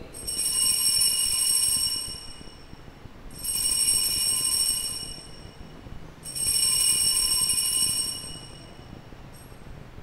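Altar bells rung three times at the elevation of the host after the consecration: three shaken, shimmering rings of high metallic tones, each about two seconds long and about three seconds apart.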